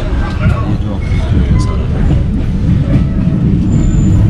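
Passenger train running, heard from inside the carriage: a steady low rumble of wheels on the rails.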